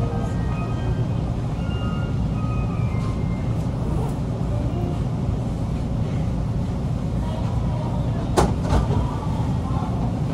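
Steady low rumble of a JR Tokaido Line train running, heard from inside the car. A few short faint tones sound in the first three seconds, and a single sharp knock comes about eight and a half seconds in.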